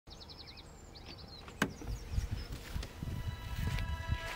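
Small birds chirping and trilling, then a sharp click of a Renault Clio's car door opening about one and a half seconds in. Soft low thuds and scuffs follow as someone climbs out of the car.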